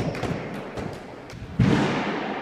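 BMX bike riding on indoor skatepark wooden ramps: tyres rolling over the surface, with a few knocks and a heavy thud about one and a half seconds in.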